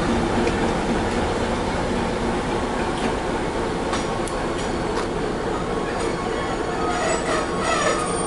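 A long rake of freight box wagons rolling past on the rails: a steady rumble of wheels with a few sharp clicks over the rail joints. A thin wheel squeal comes in near the end.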